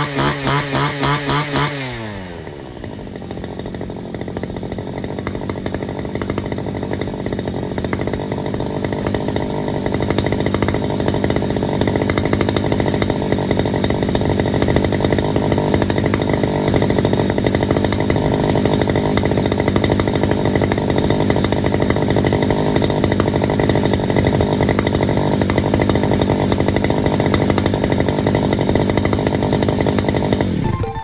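Robin NB351 two-stroke brush cutter engine revving rapidly up and down, then dropping to a steady idle about two seconds in and running evenly for the rest, on a test run after servicing.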